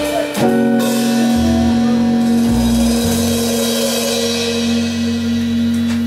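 Live jazz quartet closing a tune: the tenor saxophone holds one long final note from about half a second in, over walking double-bass notes and a cymbal wash from the drum kit.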